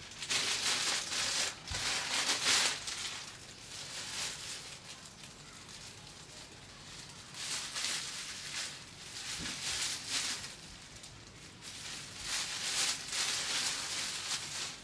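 Plastic packaging crinkling and rustling as a poly mailer bag and a clear plastic garment bag are handled and opened, in bursts with a quieter stretch in the middle.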